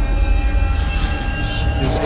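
Dramatic soundtrack: a deep steady rumble under several high held tones, which break off near the end.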